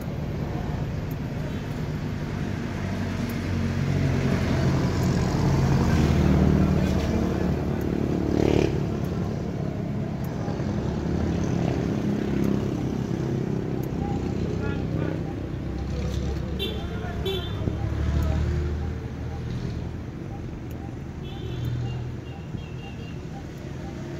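Road traffic running past: a steady low rumble that swells and fades as vehicles go by. A few short high chirps come in near the end.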